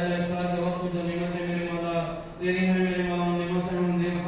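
A man's voice chanting an Islamic prayer in long, held notes, pausing briefly for breath about two seconds in.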